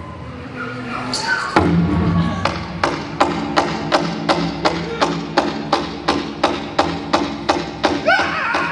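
Powwow drum starting a song: after a short pitched note about a second in, the drum begins a steady, even beat of close to three strokes a second.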